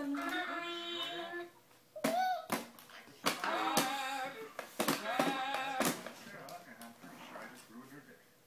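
A 31-week-old baby vocalizing in long squeals and babbles that rise and fall in pitch, three drawn-out calls, mixed with sharp clicks and knocks as the baby's hands slap a plastic electronic activity table.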